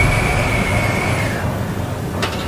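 A steady rumbling noise with a faint high whine that fades out a little after halfway through.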